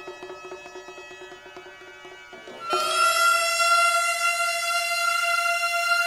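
Gagaku, Japanese imperial court ensemble music: long held wind-instrument notes. A quieter note fades through the first half, then about two and a half seconds in a loud, bright sustained note enters and holds steady.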